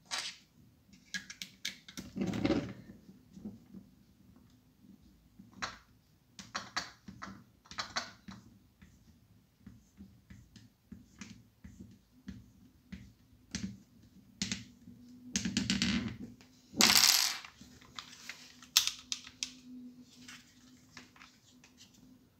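Irregular plastic clicks, taps and handling noise from a 3D-printed magwell being fitted to an airsoft Glock frame and fixed with a small Allen key and screw. A few louder scraping bursts stand out, the loudest about three-quarters of the way through.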